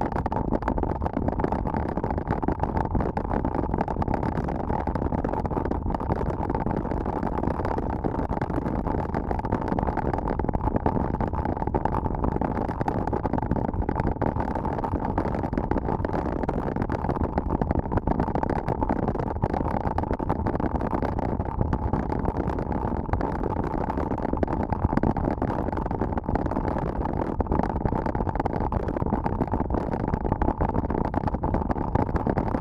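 Steady wind noise on an action camera's microphone as a mountain bike rides a gravel road at about 30 km/h, with tyres rolling on loose gravel underneath. A steady tone just under 1 kHz runs through it.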